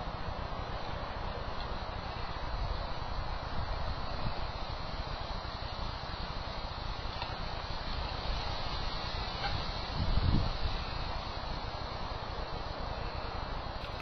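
Steady hiss of outdoor background noise picked up by the scope's built-in microphone, with a brief low knock or bump about ten seconds in.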